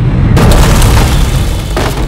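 A sudden, loud, deep boom about a third of a second in, fading slowly, mixed with dramatic film music: a soundtrack impact over a house being smashed up.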